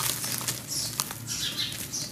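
Hands squeezing and crumbling wet charcoal in foamy water: an irregular wet squishing and crackling, with a couple of sharp clicks.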